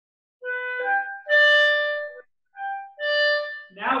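Clarinet playing a short phrase of notes in which the third note is pushed with a sudden burst of air (a 'microburst' accent) and comes out loudest and held, then a shorter phrase ending on another strongly pushed held note.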